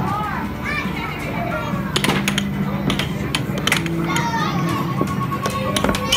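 Air hockey puck and mallets clacking in a string of sharp hits, the strongest about two seconds in, over an arcade din of children's voices and game-machine music and beeps.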